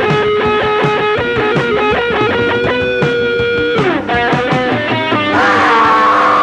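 Live punk band from a soundboard recording playing an instrumental passage: electric guitar riffing over bass and drums. About four seconds in the guitar slides down in pitch, then a louder held chord rings near the end.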